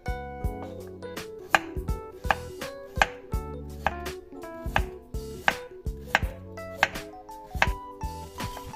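Kitchen knife slicing a raw carrot into rounds on a wooden cutting board: a crisp cut ending in a knock of the blade on the board, about two or three times a second.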